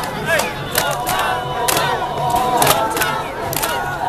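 Many voices of a parade dance troupe shouting chant calls together, with a sharp clap-like beat about once a second.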